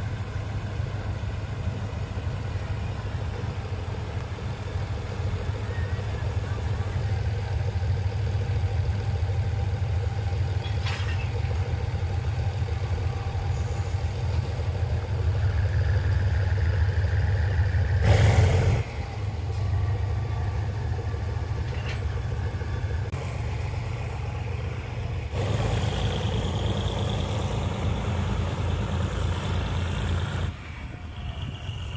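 Diesel locomotive engine running with a steady low rumble. About eighteen seconds in, a short loud burst stands out above it.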